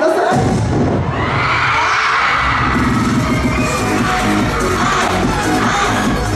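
A pop song's backing track kicks in suddenly over a concert PA with a heavy bass beat. The audience cheers and screams as it starts, loudest between about one and three seconds in.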